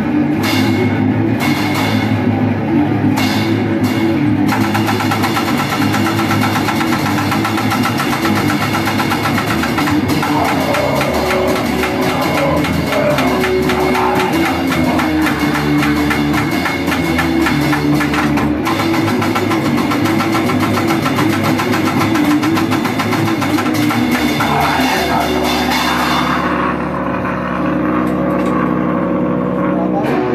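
A grind/crust punk band playing loud and fast: distorted electric guitar and bass over a full drum kit. Near the end the drums drop back, leaving the guitar and bass.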